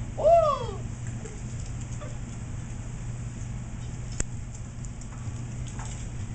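Bunsen burner flame burning with a steady low hum. About half a second in there is a short, loud vocal sound that rises and falls in pitch, and a single sharp click comes about four seconds in.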